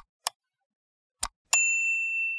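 Sound effects for an animated subscribe button: sharp mouse clicks, a quick pair near the start and another about a second in. Then, about one and a half seconds in, a last click sets off a bright notification-bell ding that rings on steadily.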